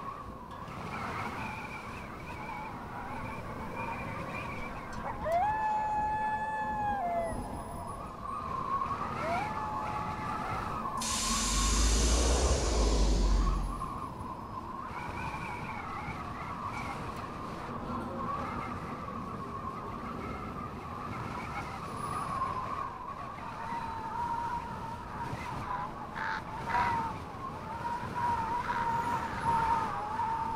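A car's steady whirring hum, with two short whines that rise, hold and fall away about five and nine seconds in, and a loud rushing rumble from about eleven to fourteen seconds in.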